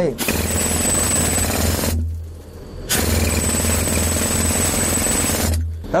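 Pneumatic pick hammer hammering into a coal face in two bursts, the first about a second and a half long and the second about two and a half, with a short pause between. The coal is hard going ("durillo").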